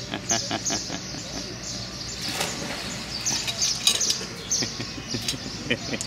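Small birds chirping in garden trees: many short, high chirps that keep going, over outdoor background noise, with a few sharp clicks in the first second.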